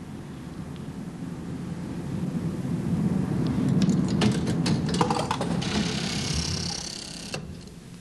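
Automatic parking-payment terminal at work: a run of sharp clicks, then a high whirring hiss that cuts off suddenly as it issues a punched ticket, over a low mechanical rumble that swells and fades.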